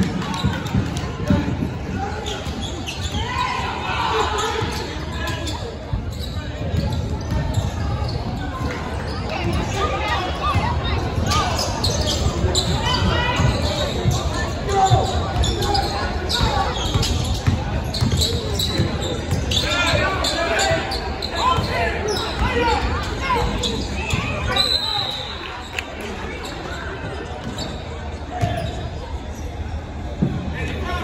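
A basketball dribbled and bouncing on a hardwood gym floor during play, with indistinct shouts and chatter from players and spectators echoing in the gym. It gets a little quieter for the last few seconds.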